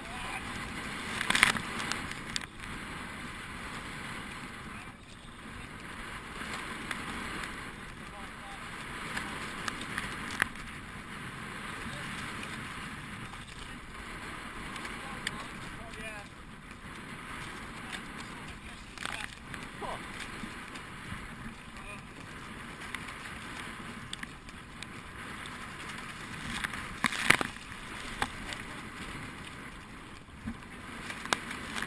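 Rowing boat moving through choppy water: a steady wash of water along the hull and oar blades splashing, with a few louder sudden splashes or knocks spread through.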